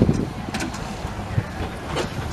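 Steam traction engines working in the arena: a low, uneven mechanical rumble with a few soft knocks.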